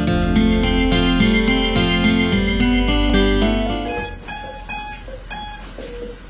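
Guitar music with quick picked notes over a low bass. About four seconds in it gives way to a quieter, thinner-sounding recording with only a few scattered notes.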